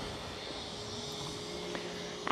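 Quiet, steady hum of motor traffic in a town street, with a thin steady tone running under it.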